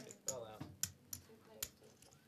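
Poker chips clicking, about five sharp, irregular clicks, over faint talk.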